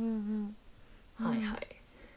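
Only speech: a woman's voice drawing out the end of a sentence, then after a pause a short hummed "mm" of agreement.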